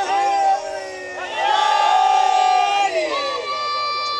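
A man's amplified voice chanting long, drawn-out notes in the sung style of a zakir's majlis recitation, each note held steady for a second or more, with glides between them.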